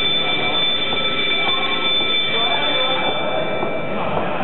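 A long, steady, high-pitched electronic buzzer tone in a sports hall, held for about four and a half seconds and cutting off shortly before the end, over the hall's background noise.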